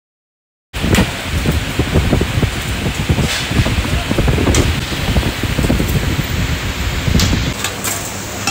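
Loud, noisy ambience of a busy kebab grill: indistinct background voices over a heavy low rumble, with a few sharp clicks and clatters. It cuts in suddenly about a second in.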